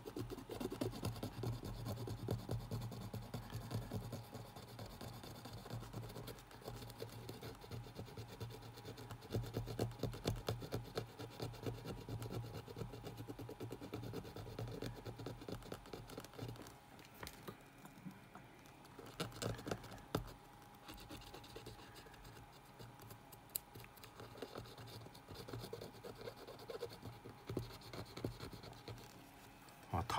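Cotton swab wet with cleaning solvent scrubbing a CD player's circuit board, a quiet, fast, irregular scratching, with a few sharper clicks a little past halfway. The board is being cleaned of leftover rosin flux and leaked capacitor electrolyte.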